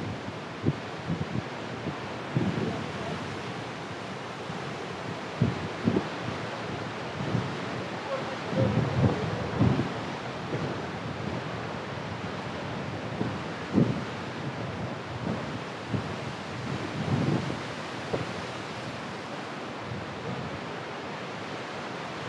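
Fast white-water mountain river rushing over rocks in a steady roar, with gusts of wind buffeting the microphone in short low thumps, heaviest about halfway through.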